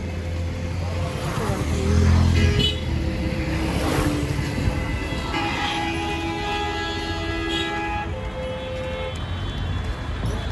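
Roadside traffic: engines running, loudest as a vehicle passes close about two seconds in, with vehicle horns sounding, one long horn blast from about five and a half to eight seconds in.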